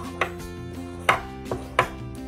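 A coin scraping across a scratch-off lottery ticket in quick swipes: four short, sharp scrapes, the strongest about a second in and near the end, with background music underneath.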